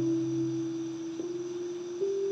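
Soft background music of slow, held, bell-like notes, the melody stepping up a little in pitch about a second in and again near the end over a lower held note.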